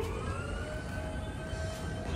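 A pitched tone, with overtones, that has just finished gliding up and now holds a steady pitch, over a low background rumble.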